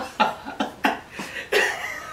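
Men laughing in a string of short breathy bursts, about three a second.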